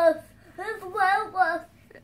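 A child's voice making one short sing-song vocal phrase, about a second long, in the middle.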